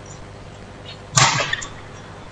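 A badminton racket strikes the shuttlecock with one sharp, loud smack about a second in, ringing briefly in the hall.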